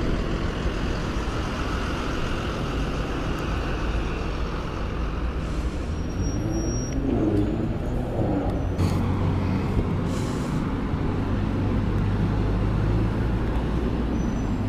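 Road traffic with bus diesel engines running, a steady low hum throughout. About seven seconds in, a rising engine note comes from a vehicle pulling away. A few short air-brake hisses come from the buses, the longest about ten seconds in.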